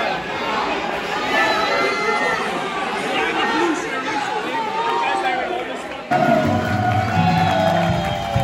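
Crowd in a large hall: many voices chattering and calling out at once. About six seconds in it cuts abruptly to music with a strong bass line over the crowd.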